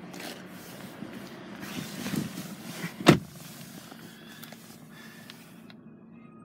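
Rustling and handling noise inside a car's cabin, growing over the first few seconds, with one sharp knock about three seconds in.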